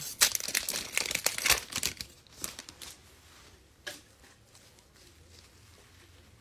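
Foil wrapper of an Optic football trading-card pack being torn open and crinkled by gloved hands, a dense crackling for about two seconds that then thins out.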